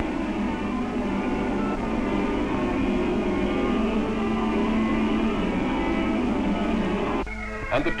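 Highland pipe music: a Scottish tune played on a chanter, with a steady held low note underneath. A man's narration starts over it near the end.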